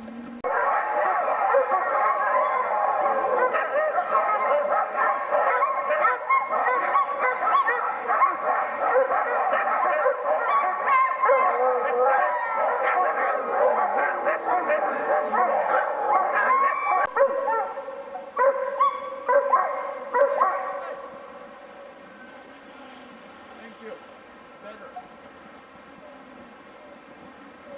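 A chorus of many sled dogs barking, yipping and howling in excitement. It starts abruptly and runs dense and loud, then breaks into a few last outbursts about three quarters of the way through before dying down.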